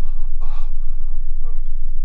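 A man's heavy breathing, with a sharp gasping breath about half a second in and fainter breaths around it, over a steady deep rumble.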